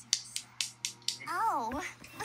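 A quick run of sharp clicks, about four a second, as the laptop's volume key is pressed repeatedly. Near the end comes a short cartoon voice line with a swooping pitch, played through the laptop speakers.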